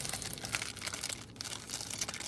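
Soft crinkling and rustling from something handled close to the microphone, a run of small irregular crackles.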